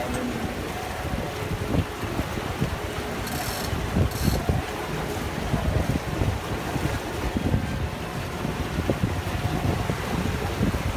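Wind buffeting the microphone aboard a boat at sea, over the rush of water and a faint engine hum. Two brief hisses come a little after three and four seconds in.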